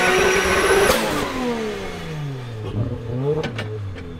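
Toyota GT86 drift car's engine held at high revs for about a second, then the revs fall away as the throttle lifts. Near the end come a few short throttle blips with two sharp cracks.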